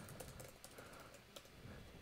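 Faint computer keyboard typing: a few light, scattered keystrokes.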